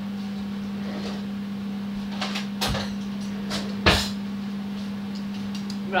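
Cutlery and kitchen fittings being handled: a few scattered knocks and clinks, the loudest a sharp knock just before four seconds in, over a steady low hum.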